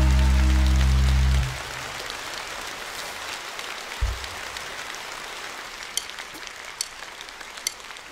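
A band's final held chord at the end of a song, cut off about a second and a half in, followed by audience applause that fades slightly, with one low thump about four seconds in.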